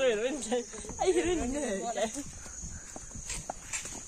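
Women's voices in the first half, then footsteps on a leaf-strewn dirt path, under a steady high insect buzz.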